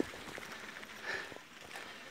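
Faint rolling and rattling of a mountain bike on a rough dirt track, with scattered small clicks.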